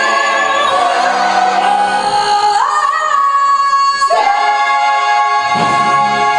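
A woman belting long held high notes in a musical-theatre style over an orchestra and chorus. Her voice steps up to a higher note about two and a half seconds in, and a new held note starts about four seconds in.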